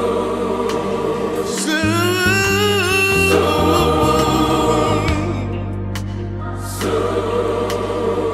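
Gospel mass choir singing with vibrato over a bass line.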